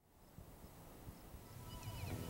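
Near silence: faint steady background hiss with a little low rumble, and a few faint short high-pitched sounds near the end.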